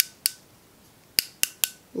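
The plastic click mechanism of a click-pen liquid highlighter being clicked five times: twice near the start, then three quick clicks past the middle. The clicking feeds the liquid up to the applicator tip.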